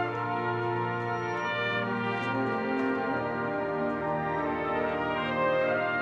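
Massed military brass band playing a slow hymn: sustained brass chords moving from one to the next, over a held low bass note that changes about halfway through.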